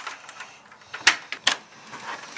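Door lock being worked with a key, giving sharp mechanical clicks about a second in and again half a second later.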